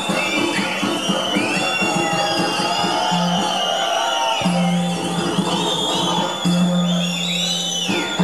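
Live accompaniment music for a South Indian dance-drama: a steady low drone with a high, wavering melody line gliding above it, and drumming.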